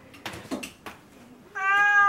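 A black-and-white domestic cat meows once: one long call that begins about one and a half seconds in and falls slightly in pitch.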